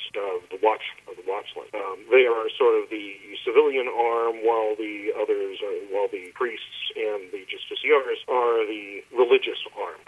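Speech only: a person talking steadily, the voice thin and cut off above the middle range like a telephone line.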